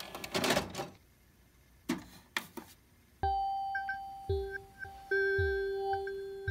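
Clicks and clatter of a stereo's CD changer working a disc, with a few more clicks a second later. About three seconds in, an electronic intro begins: a held tone over a deep kick drum thumping several times.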